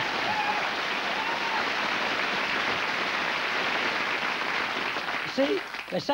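Studio audience applauding, steady throughout and dying away about five seconds in, as a voice begins near the end.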